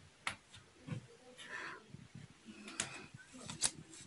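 Faint handling noise of a crocheted vest being moved by hand: a few light clicks and a brief soft rustle.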